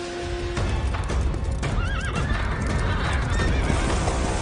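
A horse whinnies once, with a wavering call about two seconds in, over the pounding hoofbeats of a gallop.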